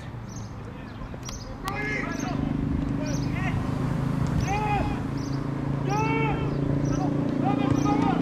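Short shouted calls from voices, about one every second or so, over a steady low hum.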